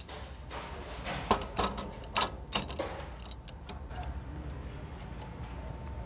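Sharp metallic clicks and clinks of a ring main unit's steel operating lever being handled and fitted into the earthing-switch socket, bunched between about half a second and three and a half seconds in, over a steady low hum.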